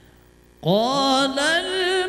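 A man begins a melodic Quran recitation (tilawah) about half a second in, sliding up into a long held note that wavers with ornaments.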